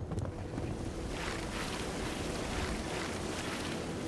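Shallow river water rushing steadily.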